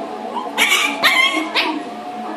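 A puppy barking three times, short high-pitched barks about half a second apart.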